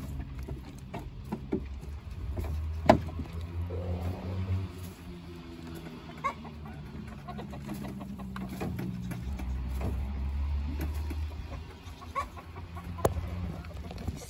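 Broody quail hen making soft low clucking calls while brooding her newly hatched chick, over a steady low rumble. A sharp click comes about three seconds in and another near the end.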